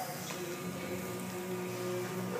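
A steady low mechanical hum, like a motor running, holding a couple of even tones throughout.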